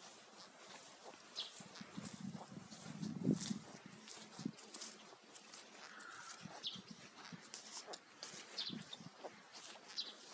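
Garden ambience: small birds chirping in short, scattered calls. Around three seconds in there is a louder, lower sound.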